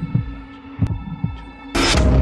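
Film sound design: a low, slow heartbeat-like pulse, in pairs of soft thumps, over a steady droning hum. A sudden loud burst of noise cuts in near the end as the action breaks out.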